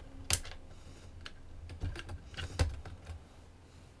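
Plastic clicks and rattles of a desktop's DIMM slot latches being pushed open and a DDR2 memory stick being worked out of its slot: two sharp clicks, one near the start and one past halfway, among lighter ticks.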